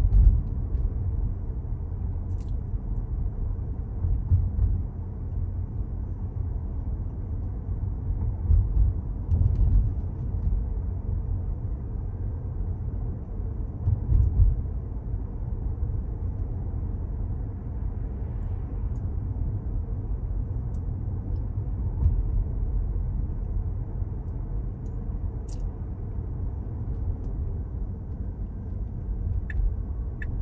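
Road noise heard from inside the cabin of a Tesla electric car driving along a town street: a steady low rumble from the tyres on the pavement, with no engine sound. It swells briefly a few times.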